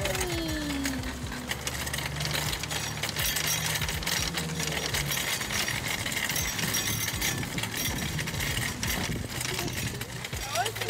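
Wire shopping cart rattling as it rolls across parking-lot asphalt, a continuous clatter of the wheels and metal basket.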